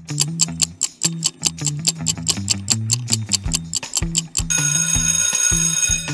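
Countdown-timer sound effect: a clock ticking about four times a second over low bass notes. About four and a half seconds in it gives way to a steady alarm-clock ring, the signal that time is up.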